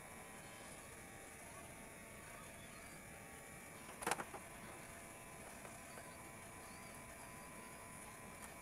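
Faint room tone, broken about four seconds in by a quick cluster of knocks and rustle as a small handheld whiteboard is brought down onto the table and wiped.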